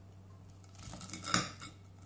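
A metal fork cutting through a fried breaded panzerotto and scraping and clicking against the plate beneath, in a short cluster about halfway through with one sharp clink the loudest.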